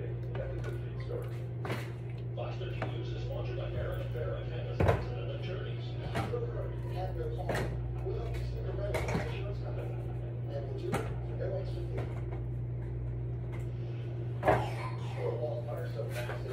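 A steady low hum with faint voices in the background, broken by scattered knocks and clicks of things being handled in a kitchen. The two loudest knocks come about five seconds in and near the end.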